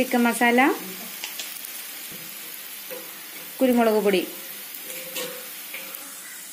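Steady sizzle of chopped onions frying in oil in a metal pan, as spice powder is added. Two short stretches of a voice break in, at the start and a little past halfway.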